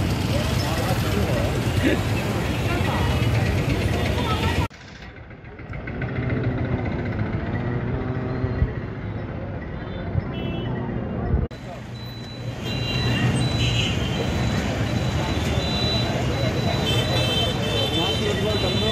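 Street traffic with motorcycles passing, and people talking nearby. The sound changes abruptly about five seconds in and again about eleven seconds in.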